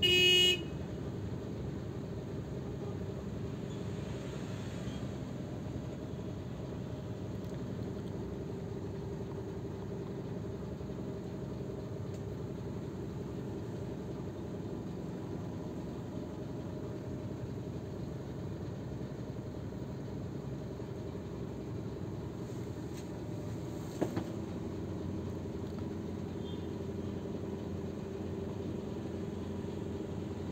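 A short horn toot of about half a second at the very start, then the steady low hum of a coach running while parked. A single click sounds about 24 seconds in.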